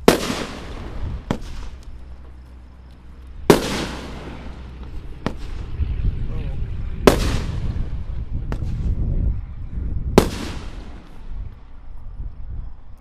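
Consumer aerial fireworks firing shot by shot: a small sharp launch pop, then about two seconds later a loud aerial burst whose sound trails off slowly. There are four bursts, roughly every three seconds, with a low rumble beneath the later ones.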